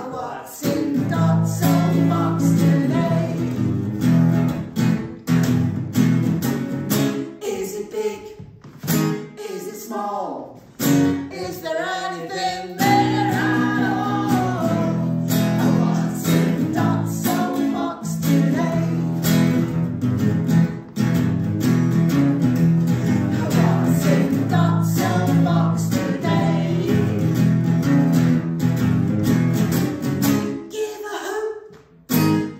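Acoustic guitar strummed in a steady rhythm, with singing along to it. The chords break off for a few seconds in the middle and then resume.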